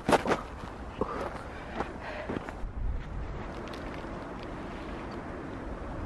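Footsteps in snow: a few steps at the start, growing softer and stopping after about two seconds, then a quiet steady hiss of open-air background.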